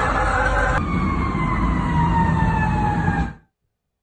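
Emergency vehicle siren wailing over a low rumbling background: the pitch rises, then falls slowly in one long wind-down. It cuts off abruptly about three and a half seconds in.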